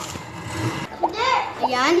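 Children's voices in a room, talking over one another. About halfway through, a high child's voice calls out, its pitch swooping quickly up and down.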